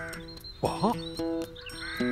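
Light cartoon background music with held notes, and a few quick swooping notes a little over half a second in.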